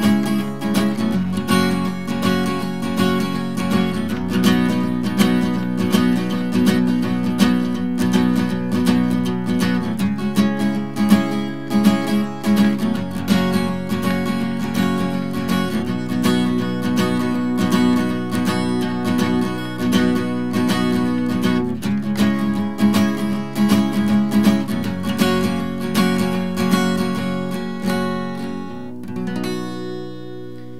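Steel-string acoustic guitar with a capo, strummed with a pick in a steady rhythm, with chords changing every few seconds. It plays the chorus pattern shifted up a whole step as the song's outro. The strumming stops near the end, leaving a chord ringing.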